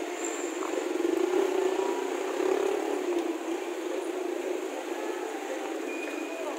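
Street traffic noise: a steady rumble of passing motor vehicles that swells about a second in and eases off after the middle.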